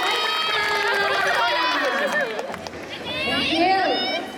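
An audience of many voices cheering and shrieking, with high calls overlapping one another. It dips briefly a little past halfway, then swells again near the end.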